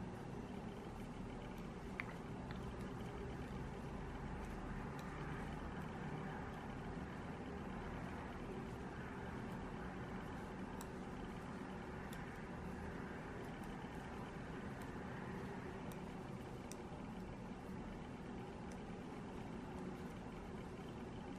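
Faint steady low background hum, with a few sparse soft clicks of metal knitting needles as a row of stitches is worked.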